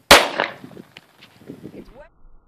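A single loud pistol shot from a 1911-A1 in .45 ACP about a tenth of a second in, with a short echo that dies away within half a second.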